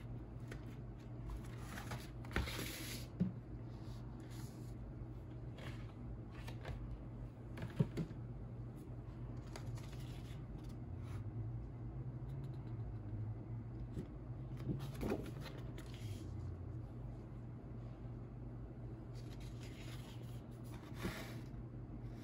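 Hands handling a vinyl record's paper inner sleeve and printed inserts: intermittent paper rustling and sliding with a few light taps, over a steady low hum.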